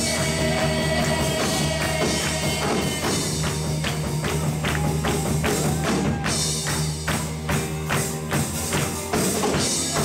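Live church worship band music, with a tambourine keeping a steady beat over held bass notes.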